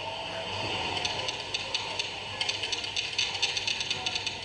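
Rapid, irregular clicking and rattling that starts about a second in and grows dense in the second half, over a steady background hum.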